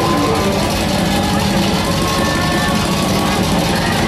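Punk rock band playing live through a loud PA: distorted electric guitars in a dense, steady wash with held tones.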